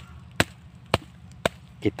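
A blade chopping at woody roots: three sharp strikes about half a second apart.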